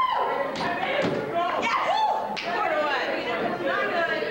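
Voices talking and calling out over several hard knocks from a foosball game, the ball and rod men striking against the wooden table.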